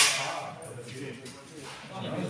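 A single sharp, hard knock of a bocce ball right at the start, ringing out through the large hall and dying away over about half a second, followed by low murmuring voices.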